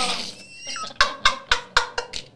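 A quick run of sharp percussive clicks, about four a second, starting a second in and quickening toward the end, after a held voice fades out.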